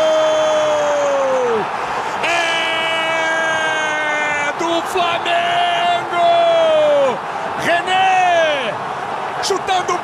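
A Brazilian football commentator's long drawn-out goal cry, "gooool". It is held in several long breaths, and each high note slides down in pitch as the breath runs out. Stadium crowd noise runs underneath.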